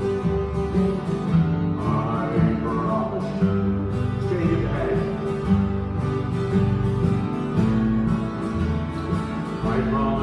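Live acoustic country music: several acoustic guitars strummed together in a steady rhythm.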